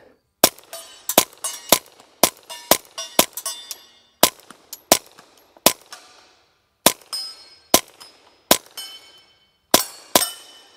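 Suppressed Ruger PC Charger 9mm pistol firing subsonic suppressor ammunition in a rapid string of more than a dozen shots, about two a second, with a short pause after six seconds.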